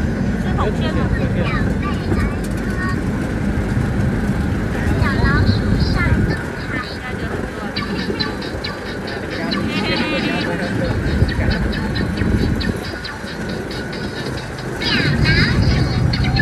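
Birds calling in quick, repeated high chirps, in clusters, over a steady low rumble.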